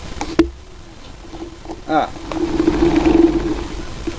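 Battery-powered small electric motor and rotor of a homemade cardboard vacuum running briefly with a steady hum, coming up about two seconds in and easing off near the end; the rotor is catching somewhere inside the housing. A sharp click comes near the start.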